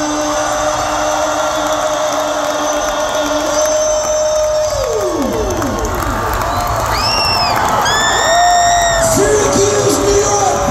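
The last held note of a live rock song dies away, sliding down in pitch, and a large concert crowd cheers, with many high-pitched whoops and 'woo' calls rising and falling over the noise.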